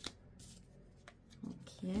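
Oracle cards being laid down on a tablecloth: a sharp tap at the start, then a couple of fainter taps and slides. A short spoken "yeah" near the end.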